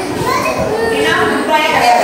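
Young children's voices chattering and calling out over one another.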